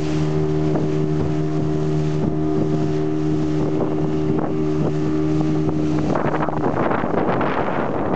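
Outboard motor of a small open boat running at speed, a steady hum, with the hull slapping on the waves about once or twice a second and water and wind rushing past. About six seconds in the engine hum drops out and a louder rushing noise of water and wind takes over.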